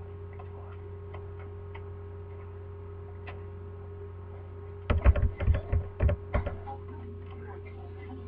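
Steady electrical hum with faint scattered ticks, then a quick run of loud knocks and thumps about five seconds in, lasting about a second and a half.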